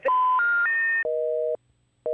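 Telephone network tones: three rising beeps, the special information tones that mean the call cannot be completed, followed by a busy signal, a low two-tone beep about half a second long that repeats after a half-second gap.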